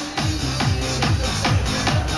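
Electronic dance music with a fast, steady kick-drum beat of about two and a half beats a second, played through a PA loudspeaker.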